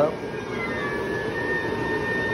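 The inflatable's built-in blower fan running steadily, with a faint high steady whine joining about half a second in. The owner says the fan is too weak to hold the figure's head up.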